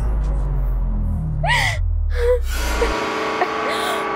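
A girl sobbing, with two gasping cries in the middle, over a low, dark background music drone; about three seconds in the drone drops out and a steady sustained music chord takes over.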